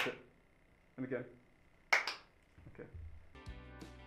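A sharp hand clap with a short vocal sound at the start, a brief voice about a second in, and a second sharp clap about two seconds in. Music with plucked notes comes in about three and a half seconds in.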